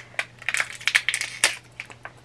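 Black foil blind-bag pouch from a mystery pin box crinkling as it is handled, a string of irregular sharp crackles with a few louder snaps.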